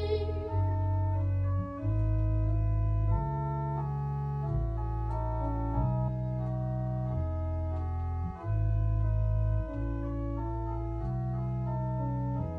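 Two-manual organ playing slow sustained chords over a strong, moving bass, the harmony changing about every second. A sung note with vibrato dies away just at the start.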